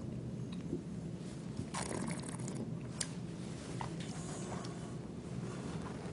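A taster slurping and swishing red wine in the mouth, with a hissing draw of air through the wine about two seconds in and a sharp click a second later, over a steady low hum.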